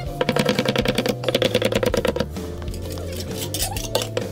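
Knife chopping rapidly on a wooden board, a fast even run of strokes for about two seconds, slicing a rolled pancake into pieces. A couple of single strokes come near the end, over background music.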